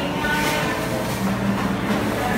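Steady rumbling noise of a moving vehicle, heard from inside.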